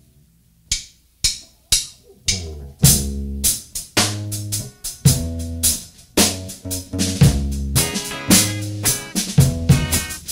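Ska-punk band starting a song: four sharp count-in clicks about half a second apart, then the full band comes in loud, with the drum kit driving the intro.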